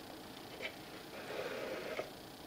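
Faint handling sounds as a hand reaches for the drawer of a small prediction box: a light tick about two-thirds of a second in, then a soft rustle near the end as a fingertip touches the drawer.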